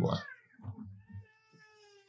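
A faint, high-pitched drawn-out call in the background, held for about a second in the second half and sinking slightly in pitch.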